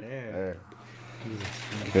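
Brief quiet voice sounds, with faint rustling of the plastic-wrapped pack of printed cards being handled and pulled open near the end.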